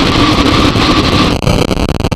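Loud, harsh distorted noise from the untitled closing track of a grindcore/powerviolence record, changing abruptly to a choppier, buzzing texture about one and a half seconds in.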